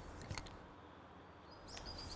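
Quiet outdoor background with a few faint clicks from a wooden serving mallet being handled on a tarred rope, two near the start and two near the end.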